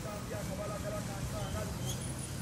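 Street traffic on a dirt road: a steady low rumble of vehicle engines, with a motorcycle passing close by. Distant voices chatter over it.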